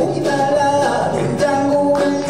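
A male sorikkun singing a Korean song, his voice to the fore over gayageum and Korean traditional ensemble accompaniment.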